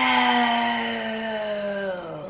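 A woman's long, drawn-out hesitation sound, "uhhh", held as one note that slowly sinks in pitch and stops just before normal speech resumes.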